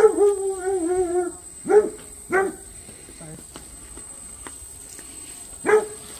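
A dog barking: a bark at the start drawn out into a long, wavering howl, then two short barks close together and one more near the end.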